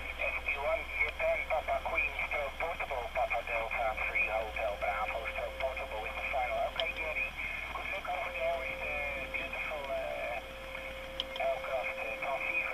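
A distant amateur station's voice received on 10-metre single sideband through an Elecraft KX3 transceiver's speaker, thin and narrow-band with band noise, too weak to make out words. A steady whistle of a carrier heterodyne sits under it, dropping out for about a second past the middle.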